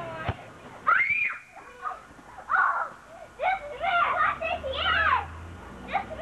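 Young children's high-pitched shouts and squeals during a backyard ball game, coming in several short bursts from about a second in, with no clear words. A single sharp click sounds just before the shouting starts.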